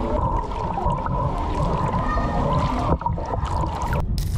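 Pool water sloshing and lapping against a camera held at the water's surface, a dense, churning low rumble with a steady faint tone running under it.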